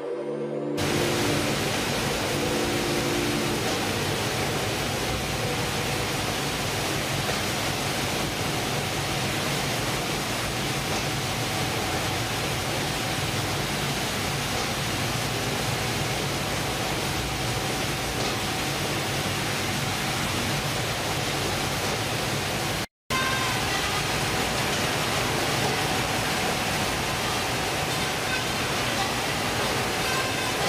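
Steady noise of fish-processing machinery, conveyors and running water on a fishing ship's factory deck. It cuts out for an instant about three-quarters of the way through.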